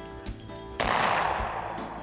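A single shotgun shot about three-quarters of a second in, loud and sudden, its report dying away over about a second, over background music.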